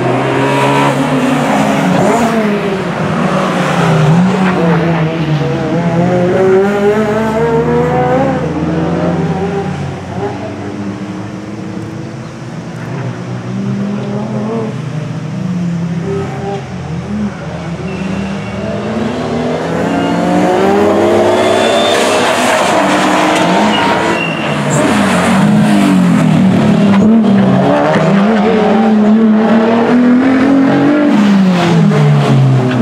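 Sports car engines at race pace on a circuit, the engine note repeatedly climbing and dropping as the cars accelerate, shift and brake through the corners. The sound fades somewhat in the middle and is loudest in the last third as the cars come close.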